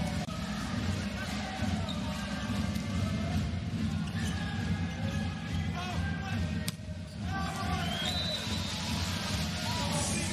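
Arena crowd at a volleyball match: spectators chanting and singing over a dense, steady low drumming. A single sharp crack comes nearly seven seconds in, and a high whistle sounds about eight seconds in.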